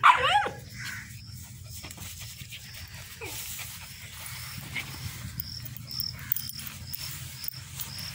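A puppy gives a short, loud yapping bark right at the start, then insects chirp in a steady rhythm, about two chirps a second, under a low steady background rumble.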